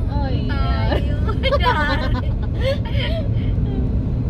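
Voices of people in a moving car, speaking or chanting in short bursts, over the steady low rumble of road and engine noise in the cabin.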